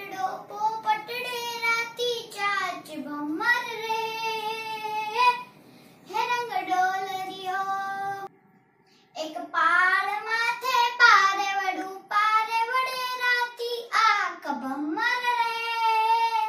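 A young girl singing a Gujarati song unaccompanied, in long held, sliding notes, with a short pause about eight seconds in.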